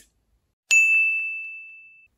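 A single bright electronic ding sound effect, less than a second in. It is one clear high tone that starts sharply and fades away over about a second.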